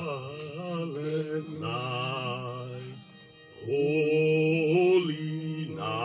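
Background music: a singing voice holding long notes with vibrato, in three phrases with short breaks between them.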